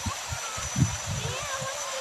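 Faint voices of people in the background, with low bumps from the phone being handled over a steady outdoor background hiss.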